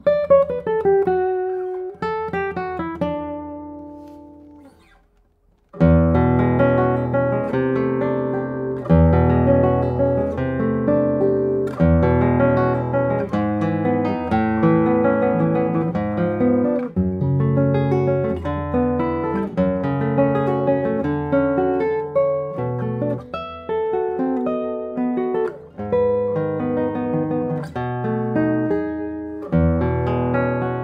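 Michel Belair double-top classical guitar played fingerstyle. A few notes ring out and die away over the first five seconds, then, after a brief silence, a continuous passage of melody over bass notes starts about six seconds in.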